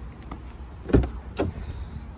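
Front door of a BMW 1 Series being opened by its handle: the latch releases with a sharp click about a second in, followed by a second lighter click as the door swings open.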